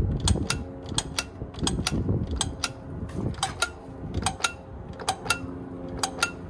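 Plastic clicking and ratcheting of a Greedy Granny toy's mechanism as it is pressed over and over, about three sharp clicks a second, with handling knocks underneath.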